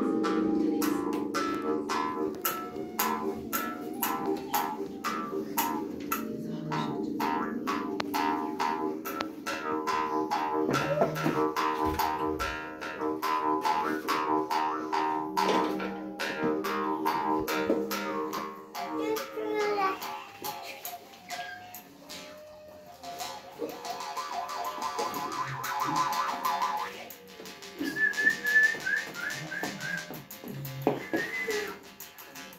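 Jaw harp played in a steady rhythm of twangs over a ringing drone for most of the first twenty seconds, then more sparsely, ending in quick high overtone chirps near the end.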